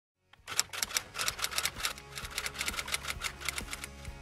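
Typewriter typing sound effect: a fast, even run of key clacks, about nine a second, starting half a second in after a moment of silence and stopping just before the end.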